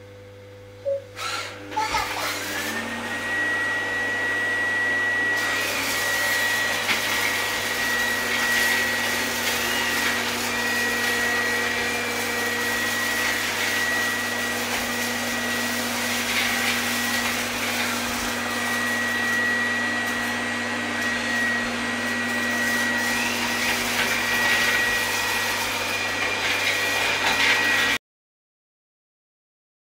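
Robot vacuum cleaner starting up in auto mode: a couple of short sounds about a second in, then its motor comes on with a rising whine that settles into a steady high whine, and it runs evenly while it cleans the floor.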